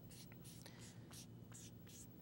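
A felt-tip marker writing on a white board in short, faint strokes, over a low steady room hum.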